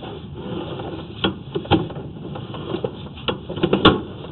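Irregular clicks and knocks from a sewer inspection camera's push cable and reel as the camera is pulled slowly back through the pipe, over a steady background noise; the clicks cluster and are loudest near the end.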